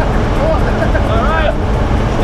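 Small jump plane's engine and slipstream droning steadily inside the cabin during the climb, with a person's voice sounding over it.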